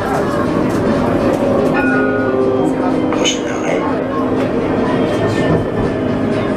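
Tram running along its track, heard from on board as steady rolling and running noise, with people's voices mixed in.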